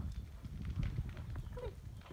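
Cocker spaniel's paws on a driveway as it runs back with a ball, a run of short, irregular footfalls. A man's voice says "good" near the end.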